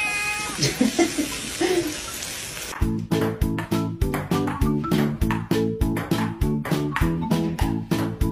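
A wet cat meowing in a few short, low calls over a steady hiss. About three seconds in, the meows give way to music with a steady beat.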